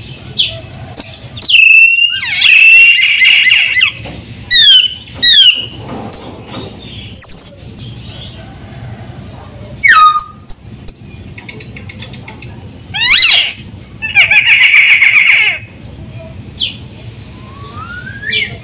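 Sulawesi myna (raja perling) singing a varied, loud series of sharp whistles that sweep up and down. Two longer harsh, buzzy chattering phrases come about two seconds in and again near the end.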